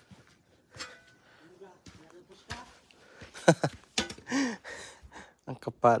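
A person's voice: short wordless exclamations and breaths, one drawn out with a rise and fall in pitch a little past the middle, and a short word at the end.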